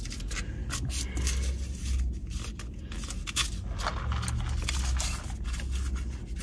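Plastic straw and iced-drink cup being handled: irregular scraping and clicking as the straw is worked into the plastic lid, with two stretches of low rumble.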